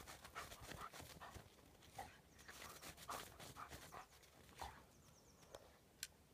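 A dog nosing and pawing in deep snow: faint, irregular short sounds of breathing and snow crunching that die away about four and a half seconds in.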